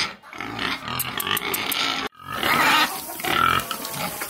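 Several pigs grunting at close range in short, repeated bursts, with an abrupt break about two seconds in.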